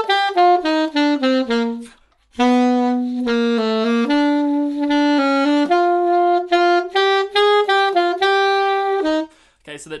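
Alto saxophone playing a passage of short notes in a 2/4 rhythm that mixes triplets with pairs of quavers: a quick run of descending notes, a short breath about two seconds in, then a longer phrase of moving and held notes that stops about a second before the end.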